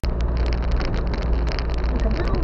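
Troller 4x4 driving on a rough red-dirt gravel road: a steady low engine and road rumble with frequent clicks and rattles from stones and the bodywork. It starts abruptly.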